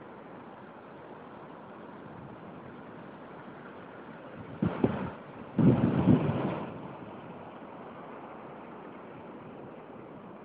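Steady rush of surf breaking on a sandy beach with wind. Two loud, rough gusts of wind buffet the microphone about five and six seconds in, the second lasting about a second.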